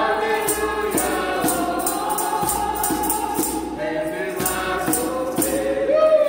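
Women's voices singing a gospel hymn together over a djembe hand drum, with a steady beat of sharp high percussive strikes a couple of times a second.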